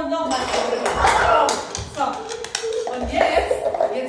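A person's voice, with light thuds of bare feet hopping on a wooden floor.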